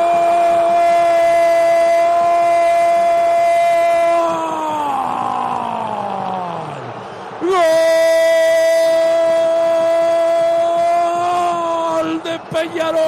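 A radio football commentator's long drawn-out goal cry, "gooool", a man's voice held on one high pitch for about four seconds before sliding down as his breath runs out. A second long, steady "gooool" starts about seven and a half seconds in and is held almost to the end.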